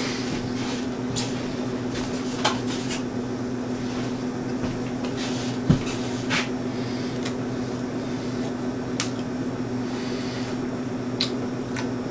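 A man chewing a mouthful of pizza with his mouth closed: faint, irregular mouth clicks and smacks over a steady low electrical hum, with one soft thump a little past halfway.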